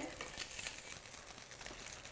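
Faint, steady sizzling and bubbling from a pan of clams and mussels simmering in broth with pan-fried sea bream.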